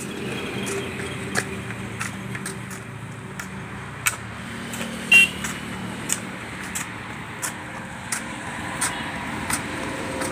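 Spades scraping and clinking as a compost heap is turned and mixed: irregular sharp scrapes over a steady low hum, the loudest about five seconds in.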